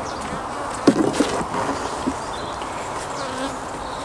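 Honeybees humming steadily around an opened hive, with a few short knocks of wooden hive parts about one and two seconds in as the super is prised off and lifted.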